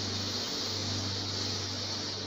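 A slow, deep breath heard as a long, steady airy hiss, paced as one of five guided deep breaths, over soft ambient music holding low sustained notes.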